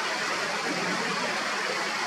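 Steady, even rushing background noise at a constant level, with no bird call or other distinct sound standing out.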